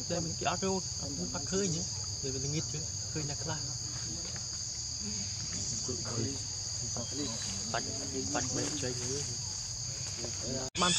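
A steady high insect chorus, with a newborn monkey's short, wavering cries repeated over it.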